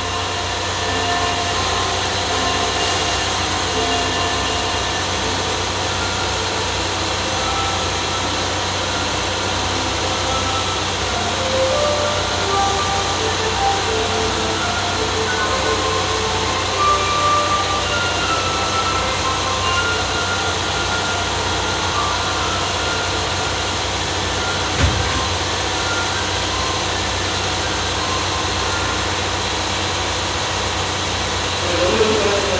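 Steady low hum of a train standing at a station, with faint scattered tones over it and one short thump about 25 seconds in.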